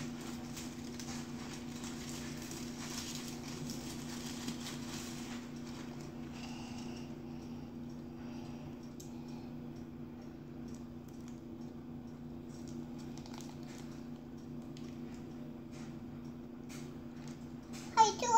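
Aluminium foil crinkling and tearing as it is unwrapped by hand, busiest in the first five seconds and then thinning to light occasional crackles, over a steady low hum.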